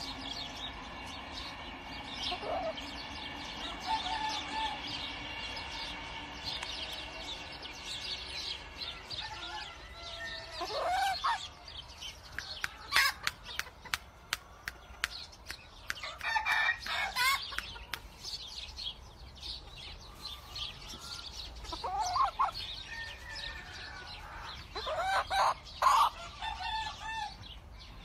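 Shamo rooster crowing about four times, a few seconds apart, with a run of sharp clicks around the middle.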